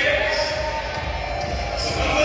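A man's voice amplified through a hall's public-address system, with steady low thudding pulses underneath.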